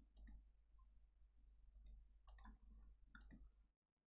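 Several faint computer mouse clicks, scattered through near silence.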